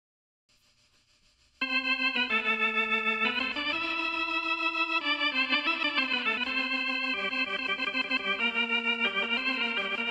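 Silence, then about a second and a half in, an electronic keyboard starts playing sustained organ-like chords that change every second or so, with a fast wavering in loudness.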